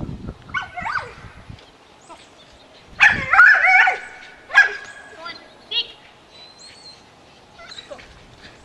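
A dog barking and yipping in several short bursts as it runs an agility course, loudest about three seconds in.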